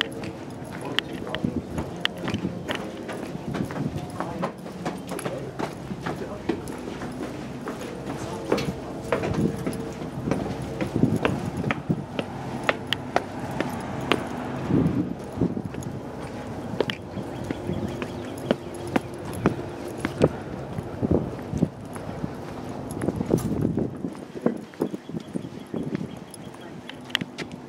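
Footsteps on a hard floor, sharp steps at a walking pace, with people talking faintly in the background.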